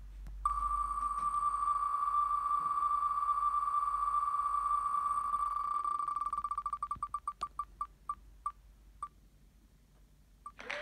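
Ticking sound effect of an online name-picker wheel (Wheel of Names) as it spins. At first the ticks come so fast they blur into one steady tone. They then separate and slow as the wheel coasts down, and the last few, spaced well apart, stop about nine seconds in, when the wheel comes to rest on the winner.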